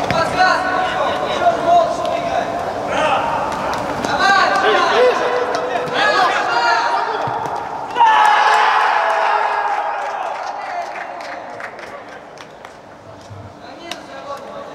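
Futsal players shouting on an echoing indoor court, with thuds of the ball being kicked. About eight seconds in, a loud shout goes up as a goal is scored, then slowly dies away.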